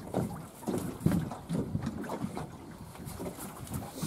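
Wind buffeting the microphone, with choppy water sounds around a small boat.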